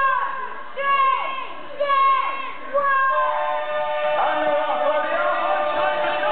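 Crowd of spectators chanting a countdown in unison, about one count a second with each count falling in pitch, then breaking into a long sustained cheer about three seconds in as the race starts.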